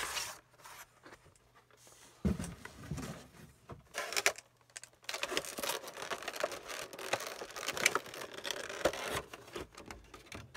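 Stiff clear plastic blister packaging being handled and flexed, crinkling and clicking irregularly, with a dull thump about two seconds in and busier crinkling in the second half.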